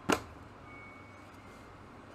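A single knock of the cardboard colored-pencil box against the desk as it is shut or set down, dying away quickly and followed by faint room tone.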